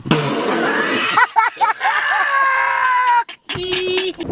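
A man's voice from an inserted meme clip. A hiss-like burst comes first, then a few short vocal sounds, then a long high held 'ooh' that sinks a little in pitch and cuts off abruptly, followed by a short steady lower tone.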